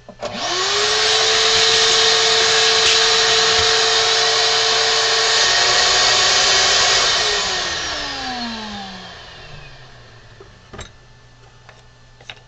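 A high-speed electric motor tool is switched on, spins up to a steady high whine with a strong rushing hiss, runs for about seven seconds, then is switched off and winds down over about three seconds. A single knock follows near the end.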